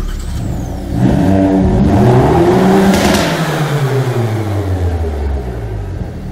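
Hyundai Veloster N's turbocharged 2.0-litre four-cylinder revved hard through its adjustable exhaust. The engine comes in loud at once, climbs in pitch over the first two to three seconds, then winds slowly back down.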